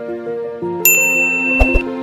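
Channel outro jingle: soft music with held notes, joined about a second in by a bright ding that rings for about a second, with a low thud just after.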